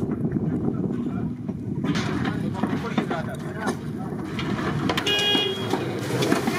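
Background chatter of several people over a low steady hum, with a brief high electronic tone about five seconds in.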